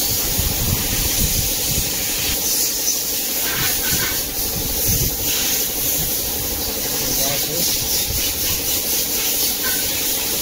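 A steady, loud hissing noise with indistinct voices and irregular low rumbles underneath.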